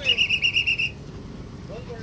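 A whistle blown in a short trill: a high, piercing tone warbling about nine times a second for just under a second, then stopping.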